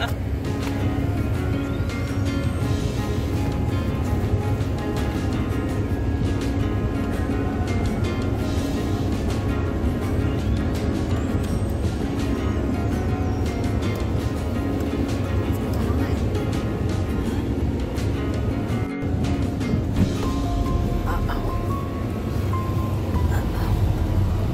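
Background music with sustained held notes over a steady low bass, running evenly throughout.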